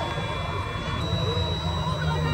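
Large spinning-arm thrill ride running, its machinery giving a steady low hum and a thin high whine that steps up slightly in pitch about halfway through. Faint voices sound over it.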